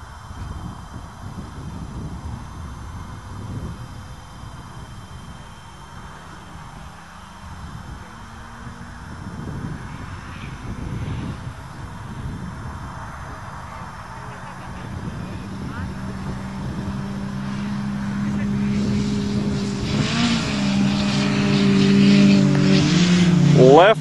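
Four-cylinder 16-valve engines of an Eagle Talon and an Oldsmobile Achieva Quad 4 racing flat out across a field. They are faint at first, then grow steadily louder as the cars come closer, with pitch rising and dropping at gear changes in the last few seconds.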